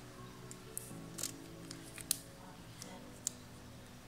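A few sharp clicks and taps from a plastic wristwatch strap and its two-pin buckle being fastened on a wrist, over quiet background music.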